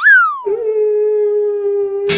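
A pitched comic sound effect: a quick sweep up in pitch and back down, then one long steady note held to the end.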